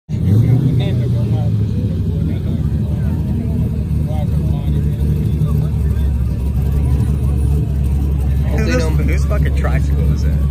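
A car engine running with a steady low rumble, with crowd voices around it.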